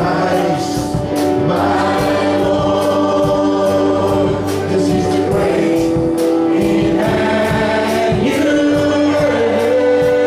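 Church congregation and worship band singing a slow praise song together, voices holding long notes over guitar, with a steady beat.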